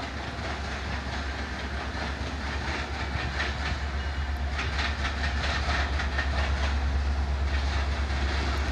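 Florida East Coast Railway diesel freight locomotive approaching: a low engine rumble that slowly grows louder, with wheels clicking over the rail joints from about three seconds in.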